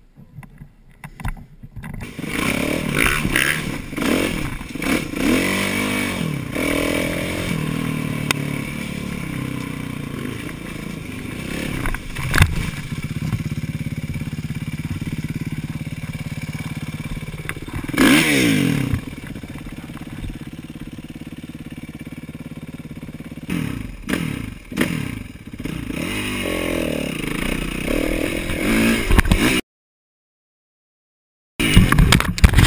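Kawasaki KX450F motocross bike's single-cylinder four-stroke engine revving up and down and running, with a sharp clatter about eighteen seconds in and scraping knocks later as the bike is handled on rough ground. The sound cuts off suddenly near the end.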